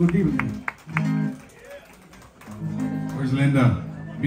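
Conjunto band music: strummed plucked strings with a voice over them. The sound drops to a lull about halfway through, then picks up again.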